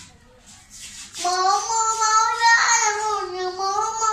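A boy singing into a handheld microphone. He comes in about a second in with long held notes that slide slowly in pitch.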